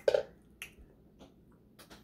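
Mouth sounds from licking fingers after eating: one loud wet smack, then three short lip smacks about every half second.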